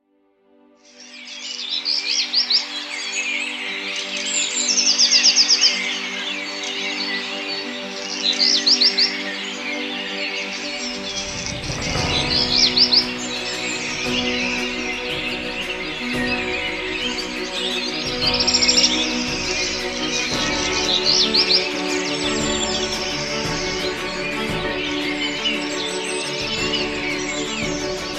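Many birds singing, with dense chirps and short repeated trills, over soft background music of held chords. The sound fades in from silence at the start, and a deeper bass layer joins the music about halfway through.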